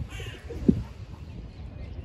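A bird calling once near the start, over a steady low rumble, with a sharp thump just under a second in.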